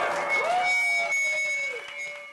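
A live rock band's sound dying away at the end of a song: a high, steady feedback-like whine holds while a lower tone slides up, holds and falls away near the end.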